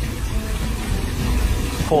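Wind buffeting the microphone: a low, uneven rumble, with a man's voice starting a word at the very end.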